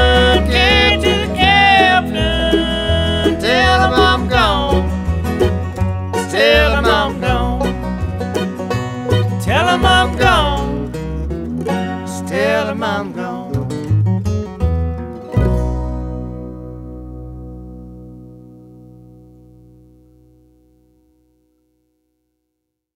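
A bluegrass string band plays the closing instrumental bars, with plucked banjo and guitar and sliding notes. About fifteen seconds in, it lands on a final chord that rings out and slowly fades away.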